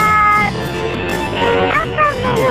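A high-pitched female cartoon voice declaiming a dramatic line over background music, the voice held on a long note at first and then bending in pitch.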